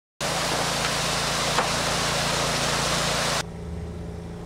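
Skateboard wheels rolling over concrete, heard close on the camera mic as a loud, steady rushing noise with a single click about a second and a half in. It starts suddenly just after a moment of silence and cuts off about three and a half seconds in, leaving a quieter low hum.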